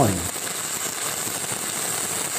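Stick-welding (shielded metal arc) arc burning a 7018 rod, sizzling steadily as a vertical-uphill bead is run.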